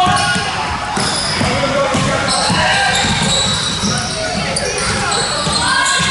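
A basketball bouncing on a hardwood court in a large gym hall, mixed with the indistinct calls of players and spectators.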